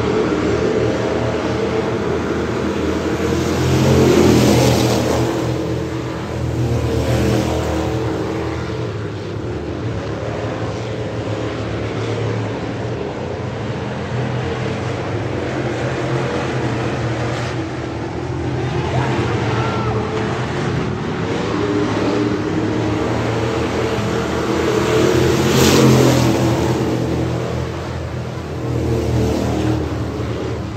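Thunder Bomber dirt-track stock cars running together around the clay oval. Their engines make a continuous din that swells loud as the pack passes close, about four seconds in and again near the end.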